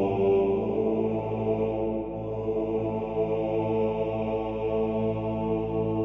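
Background music of steady, held drone-like tones, in a slow chant-like style.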